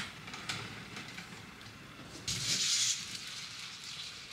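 A short hiss, about half a second long, a little over two seconds in, over faint room noise with a light knock near the start.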